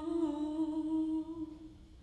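A woman's unaccompanied solo voice holding one long note, which fades out near the end.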